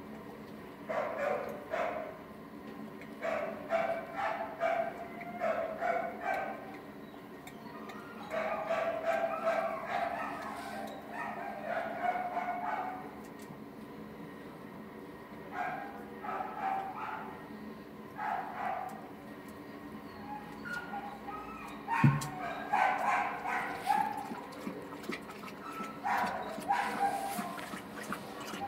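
Dogs barking in short repeated bouts in an animal shelter's kennels, over a steady low hum. A sharp knock, the loudest sound, comes late on.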